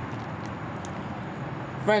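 Steady outdoor city ambience: a distant traffic hum with no distinct events. A man's voice comes in near the end.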